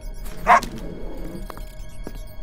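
A small dog's single sharp bark about half a second in, over background music.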